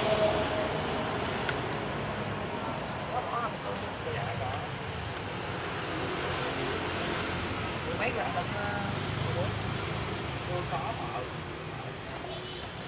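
Steady hum of street traffic with faint background voices.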